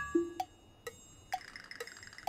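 Clock-like tick-tock sound effect, about two ticks a second alternating high and low, following the last note of a music phrase. About a second and a half in, a high sustained shimmering tone comes in beneath the ticking.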